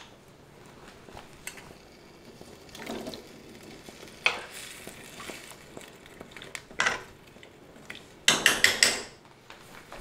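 Potatoes going into a nonstick skillet of broth and a large spoon stirring them, knocking against the pan: scattered soft clunks and splashes, then a quick run of loud knocks near the end.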